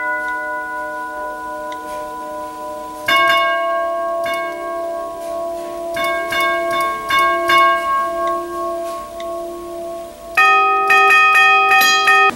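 Wall-mounted tubular doorbell chime, its metal tubes struck in a custom pattern sent from an MQTT phone app, each note ringing on and overlapping the others. New strikes come about three seconds in and about six seconds in, and a louder run of notes near the end.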